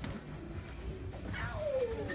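A person's voice: one drawn-out vocal sound, falling steadily in pitch, near the end, over low indoor background noise.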